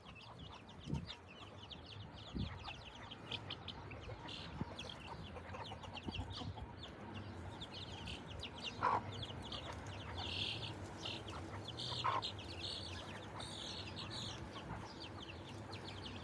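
Chicks peeping rapidly and without pause, many short high calls overlapping, with a couple of louder, lower single calls about nine and twelve seconds in.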